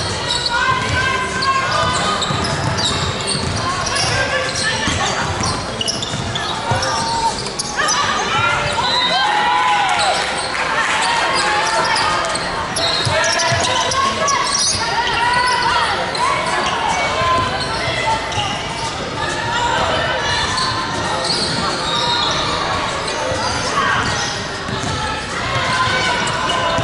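Basketball game on an indoor hardwood court: the ball dribbling and players calling out, echoing in a large hall.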